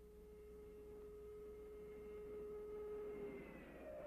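Faint, steady high-pitched whine of the F-104 Starfighter's jet engine, one held tone that fades away about three seconds in.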